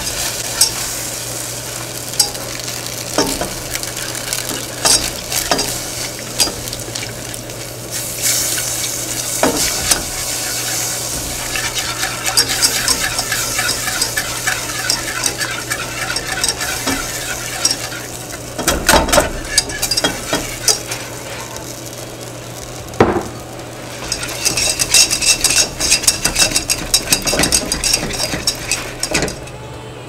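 Wire whisk beating and scraping against a metal saucepan while milk is whisked into a flour-and-butter roux for a cheese sauce, with stretches of rapid ticking strokes. A couple of heavier knocks come about two-thirds of the way through.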